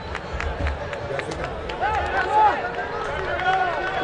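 Men's voices shouting and calling across an open football ground during a goal celebration, several at once and in short bursts, with a few sharp claps.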